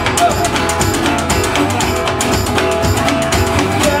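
Live blues band music: a resonator guitar strummed over a steady scraped-and-struck washboard rhythm, with no singing until a word right at the end.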